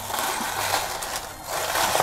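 Shredded-paper gift-box filler rustling and crinkling as it is pressed into a cardboard box, with the box being handled. The rustle eases briefly about one and a half seconds in.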